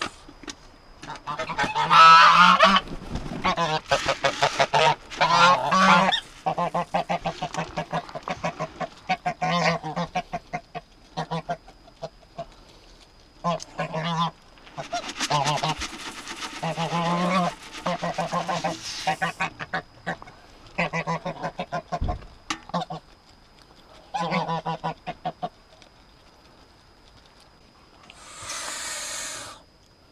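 White domestic geese honking repeatedly while being fed, in loud bouts of calls separated by quieter gaps; the loudest bout comes about two seconds in.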